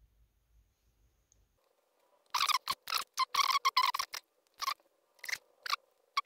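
Small circuit-board pieces being handled and worked at the bench: a quick run of about a dozen short scrapes and clicks, starting about two seconds in, over a faint steady hum.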